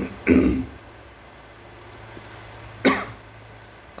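A man clears his throat, a loud half-second rasp near the start, then gives a second, much shorter throat-clear or cough about three seconds in.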